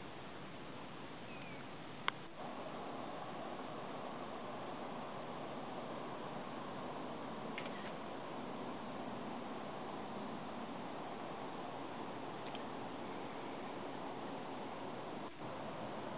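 Steady, faint outdoor background hiss in woodland, with a single sharp click about two seconds in and a few faint, brief chirps.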